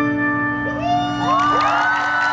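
The song's final chord on a Nord Stage 2 keyboard rings out and fades, and from about half a second in a crowd starts cheering, with high whoops and shouts rising over it.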